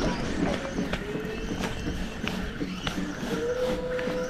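Spinning fishing reel being wound by its handle: a steady mechanical whir with small clicks, and a thin whine about half a second in and again near the end.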